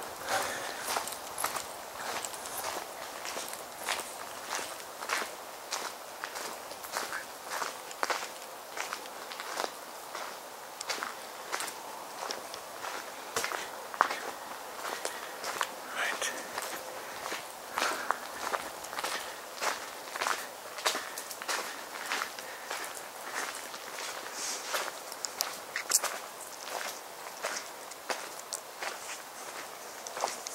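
Footsteps of one person walking at a steady pace over rough woodland ground, about two steps a second.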